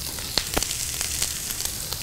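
Chopped onions sizzling in hot oil in a stainless steel skillet: a steady hiss with a few sharp pops about half a second in. The sizzle is the sign that the pan is hot enough.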